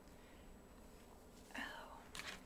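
Near silence: room tone, with one brief faint sound about one and a half seconds in.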